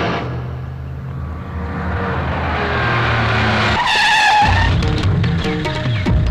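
Film background score with a low, sustained drone, cut by a short, high car tyre screech about four seconds in, after which a throbbing beat takes over.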